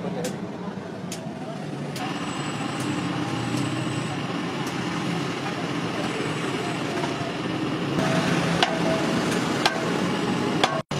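Steady background street traffic noise, with a few light knocks and clicks.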